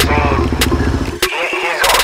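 Motorcycle engines idling, a steady low pulsing, with voices over them; the engine sound cuts off abruptly a little past a second in.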